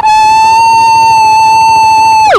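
A long, loud, high-pitched scream held on one steady note.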